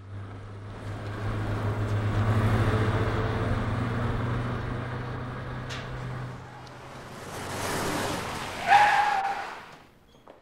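A car's engine passes close by, swelling and then fading away. A car then pulls up and brakes to a stop with a brief squeal just before the nine-second mark.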